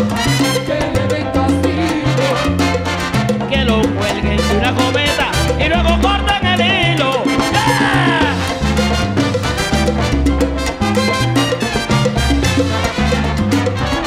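Salsa band playing, with a steady repeating bass line and busy percussion; about eight seconds in, a run of falling pitched glides rises above the band.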